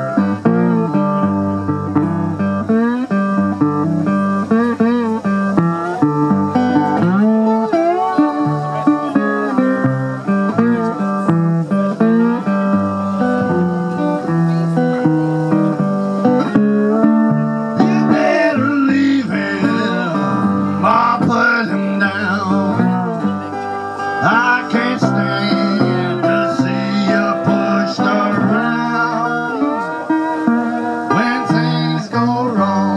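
Slide guitar played on a homemade, plywood-bodied resonator guitar: a bluesy instrumental passage in which the metal slide makes the notes glide and bend up and down.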